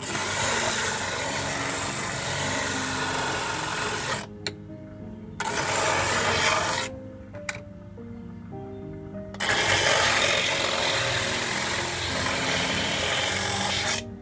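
Coconut shell strip pressed against a spinning sanding disc driven by an electric motor: a rough grinding hiss in three spells, a long one at the start and another at the end with a shorter one between, broken by quieter gaps with a click or two. Background music with stepping notes runs underneath.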